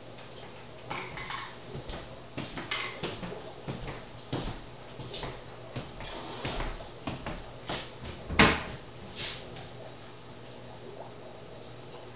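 Breakfast things being handled at a kitchen table: scattered small clicks, taps and rustles of a plastic container and dishes, with one louder knock about eight seconds in.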